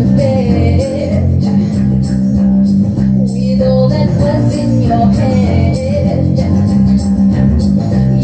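A woman singing a slow melody live into a handheld microphone over instrumental backing with guitar and a steady low bass.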